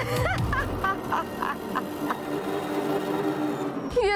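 A woman's villainous cackling laugh over dramatic background music. It starts with swooping pitch, then breaks into short bursts about three a second that stop after about two seconds, leaving the music's sustained tones.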